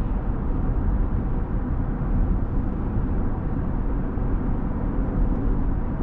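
Steady road and engine noise inside the cab of a 2020 Chevrolet Silverado pickup with the 3.0-litre Duramax inline-six turbodiesel, cruising, a low, even rumble with no changes.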